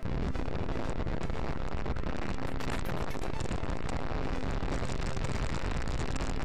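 Atlas V 551 rocket at liftoff, its RD-180 main engine and five solid rocket boosters heard up close from a remote pad camera: a steady, dense, crackling rumble.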